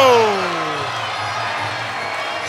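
A man's drawn-out "oh" that falls in pitch, reacting to a knockdown, over a steady background of arena crowd noise and music.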